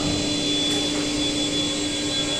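Steady droning machinery and air-handling noise of a furniture factory floor, with a constant low hum running through it.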